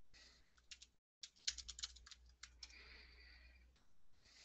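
Faint typing on a computer keyboard: scattered key clicks, with a quick run of them in the middle.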